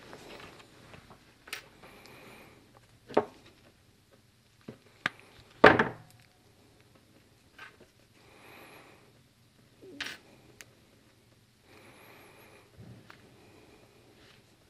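Hands working a stripped radial wire and a small fork connector on a workbench, with tools handled and set down: scattered clicks and knocks with soft rustling between, the loudest knock about six seconds in.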